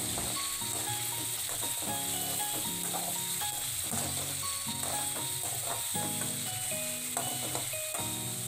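Chicken pieces frying in hot oil in a wok, with a steady sizzle as a metal skimmer turns them. Soft background music with held notes plays over it.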